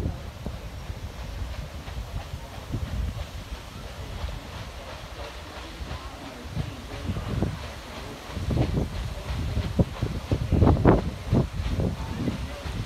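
The paddle steamer Canberra's steam engine and paddle wheels working as the boat moves out into the river, in uneven pulses that grow louder in the second half. Wind rumbles low on the microphone throughout.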